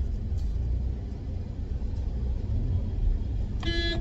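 Low, steady rumble of a car engine and road traffic heard from inside a Maruti WagonR's cabin, with a short car horn honk near the end.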